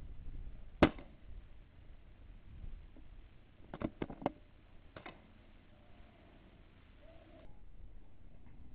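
A single air rifle shot, one sharp crack about a second in. Around four seconds in comes a quick run of three lighter clicks, then one more a second later.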